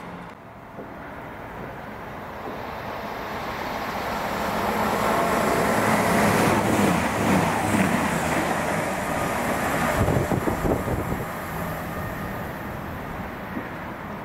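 A passenger train passing through the station at speed. The rush of wheels on rail and air builds over several seconds, is loudest for several seconds in the middle as the train goes by, then falls away near the end.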